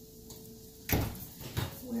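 Kitchen knocks: one loud, sharp thump about a second in, then a lighter knock.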